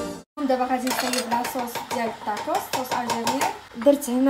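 Metal cutlery clinking repeatedly against ceramic bowls and plates as a woman talks.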